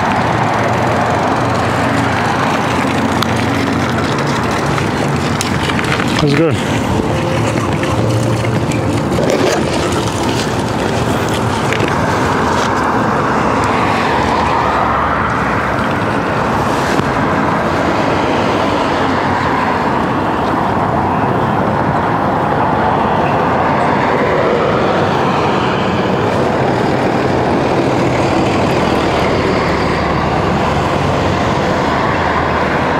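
Steady outdoor road-traffic noise, with a single sharp knock about six seconds in.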